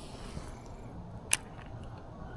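Faint outdoor background with a single short, sharp click about a second and a half in, typical of fishing tackle being handled.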